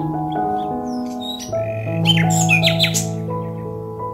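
Gentle background music of slow, held notes, with birds chirping over it; the calls come thickest about two seconds in.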